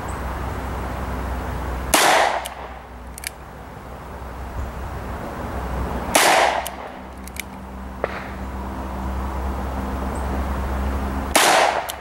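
Three single shots from a six-inch Ruger GP100 revolver, fired slowly about four to five seconds apart. Each shot has a short echo.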